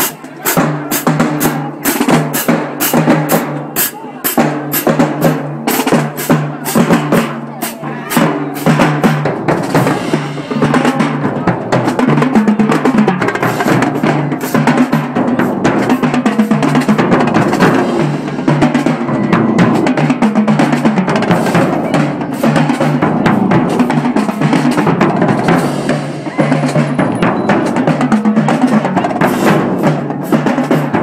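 High school marching drumline playing a cadence, with snare drums, bass drums and cymbals, loud and close. Sharp, separate hits for the first ten seconds or so, then a denser, busier groove.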